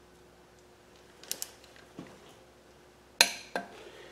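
Torque wrench on the oil pump mounting bolt of a small-block Chevy 350: a few faint metallic ticks, then a loud sharp click about three seconds in, followed by a lighter one, as the bolt is brought up to 40 foot-pounds.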